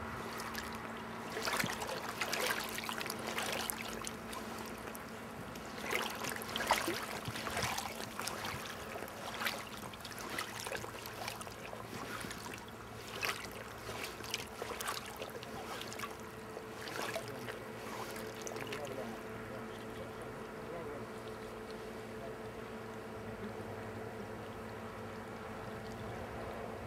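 River water splashing in irregular bursts through most of the stretch, over the steady sound of flowing water, while an angler wades and plays a hooked salmon.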